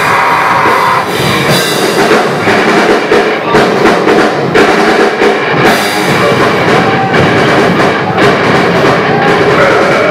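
Live rock band playing loud and without a break: drum kit, electric guitar and bass guitar together.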